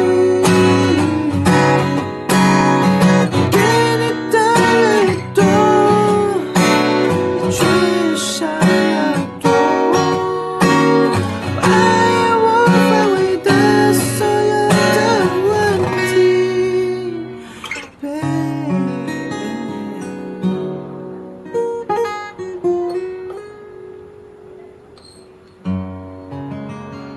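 Steel-string acoustic guitar strummed in a syncopated, percussive pattern with slapped strokes between the chords. Near the end it slows into softer, ringing arpeggiated chords that die away, the arpeggio ending of the song.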